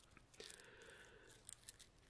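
Near silence, with faint handling noise from hands flexing an old resin-casting mold: a soft scraping sound from about half a second in to a second and a half, and a few small ticks.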